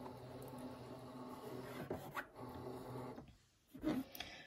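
Brother ScanNCut DX230 cutting machine scanning the mat: a steady low mechanical hum from its scan drive, which stops about three seconds in as the scan finishes.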